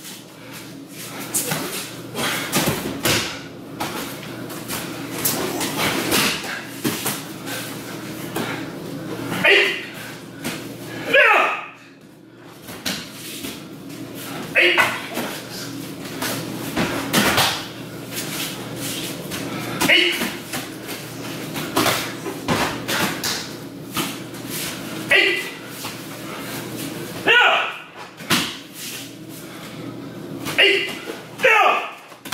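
Aikido throws in quick succession: bodies repeatedly hit the tatami mats in breakfalls, each landing a sharp slap or thud. Short shouts come at intervals, every few seconds.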